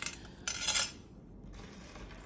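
Metal wire-wrapped necklace and its chain jingling briefly against a stone tabletop as it is laid down, about half a second in.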